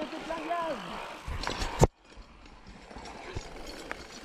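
Mountain bike rolling down a dirt forest trail: rattling knocks from the bike, the loudest a sharp one just under two seconds in, then the sound cuts off abruptly and a quieter steady rolling noise follows.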